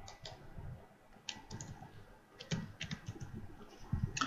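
Computer keyboard typing: a handful of separate keystrokes spread through the seconds, some in quick pairs and triples, as a number is typed into a field.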